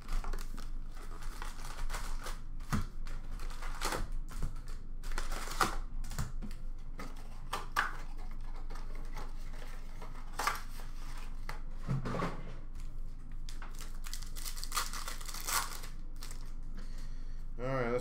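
Cardboard trading-card box being torn open and its wrapped card packs crinkling as they are unloaded and handled: a run of short, irregular rustles, tears and clicks.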